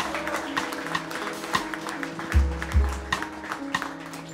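Live jazz band playing: drums with cymbal strikes and a pair of heavy kick-drum beats about two and a half seconds in, over held bass and keyboard notes.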